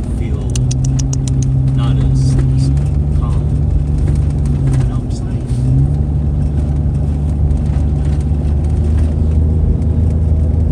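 Car cabin noise on the move: a steady low engine and road drone, its engine note stepping up and down a few times. A quick run of faint clicks about half a second in.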